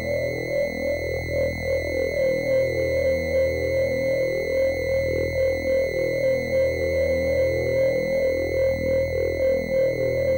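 Synthesizer background music: a steady held high tone over a low drone, with quickly repeating keyboard notes underneath.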